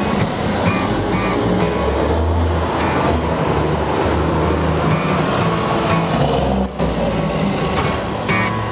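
Upbeat acoustic guitar music, strummed in a steady rhythm, over a broad rush of city street traffic noise with a low rumble that swells through the middle.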